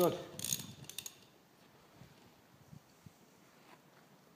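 Socket wrench ratcheting in two short bursts of clicks in the first second, tightening the engine block's bolts toward 30 newton metres, then only a few faint taps.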